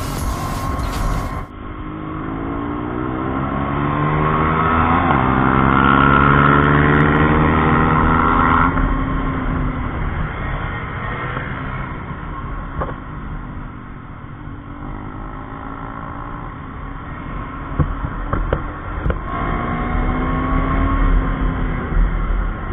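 KTM Duke's single-cylinder engine accelerating hard, its pitch climbing for about six seconds to a peak, then falling away as the throttle closes. It runs lower for a while and rises again near the end.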